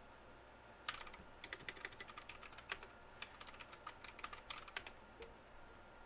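Computer keyboard typing: faint, irregular keystrokes, starting about a second in and running in quick clusters until near the end.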